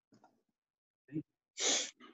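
A person's short voiced sound followed about half a second later by a sharp, hissy burst of breath.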